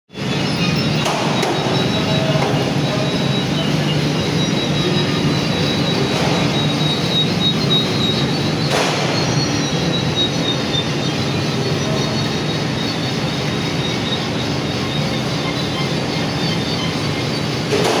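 Rotary swing-tray biscuit oven running: a steady mechanical rumble with high squealing tones from the turning tray carrier and its belt drive, broken by a few sharp clanks of the swinging trays.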